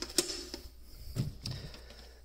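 Small plastic clicks and handling noise of a white balance-wire connector being unplugged and a plexi-cased battery cell monitor being picked up, with two sharp clicks at the start and softer knocks after.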